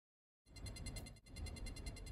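Faint electronic buzz with a thin high-pitched whine of several steady tones, starting about half a second in after a moment of dead silence.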